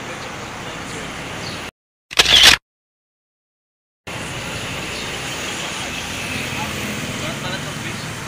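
Camera-shutter snapshot sound effect: one loud, sharp click-burst about two seconds in, set into an outdoor background of traffic and voices. The background cuts out just before it and stays silent for about a second and a half afterwards, then returns.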